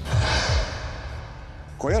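A man's heavy sigh, a breathy rush that starts at once and fades out over about a second, with low breath thumps on the microphone at its start. Speech begins near the end.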